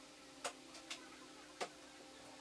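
Three light, sharp clicks of a pen tapping against a plywood panel while a cut line is marked, over a faint steady hum.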